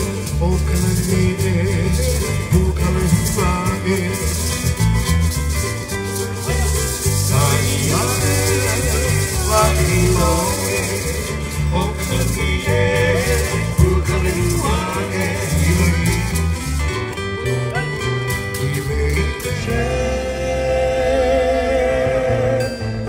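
Live Hawaiian music: ukulele and bass with singing, and hula dancers' feathered gourd rattles ('uli'uli) shaken in rhythm. The rattling thins out in the last few seconds.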